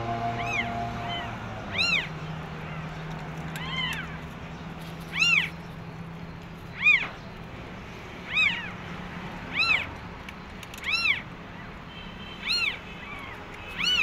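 Newborn kittens mewing: high, thin cries that rise and fall, one about every second and a half, some ten in all.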